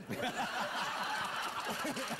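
Studio audience laughing: many voices at once, breaking out right after a punchline and carrying on steadily.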